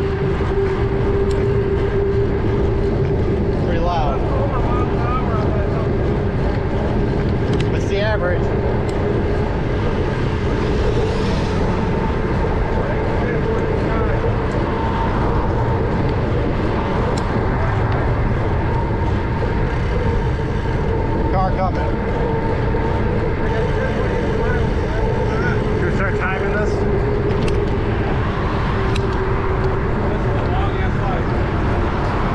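Wind rushing over an action camera's microphone on a moving bicycle, a steady roar with a constant hum underneath. A few brief chirps come through now and then.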